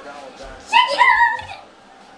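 A brief high-pitched squeal, starting about three-quarters of a second in and lasting under a second.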